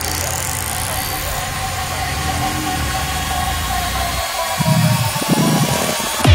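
Electronic dance track in a build-up: a rising synth sweep at the start over held synth tones and a low, rough, engine-like rumble that cuts out about four seconds in, leaving a few short bass hits before the drop.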